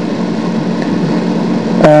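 Steady hiss with a faint low hum: the background noise of an old home-recorded interview, with a drawn-out spoken "uh" starting just before the end.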